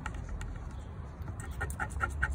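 Scratch-off lottery ticket being scraped with a scratcher: short scraping strokes, faint at first, then louder and regular at about six a second from around halfway through.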